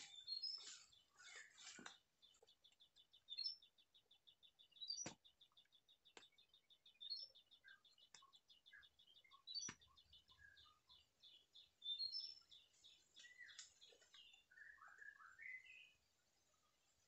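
Faint bird calls: a rapid, even, high ticking trill runs through most of it, with scattered chirps and a few sharp clicks, then several whistled notes that slide up and down near the end.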